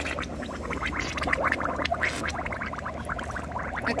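A child blowing bubbles with her mouth at the surface of swimming-pool water: rapid, irregular bubbling and popping as she breathes out into the water.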